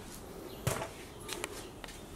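A pickup door latch clicks once, about two-thirds of a second in, followed by a few faint ticks as the door swings open, over quiet background.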